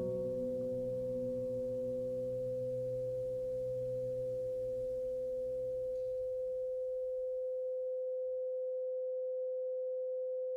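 A steady, unchanging pure sine tone just above 500 Hz, the drone of a 'love frequency' sleep track. Under it, a low chord fades out over the first six seconds, leaving the tone alone.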